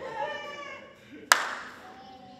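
A brief voice, then a single sharp hand clap about a second and a half in, the loudest sound, ringing briefly in the room.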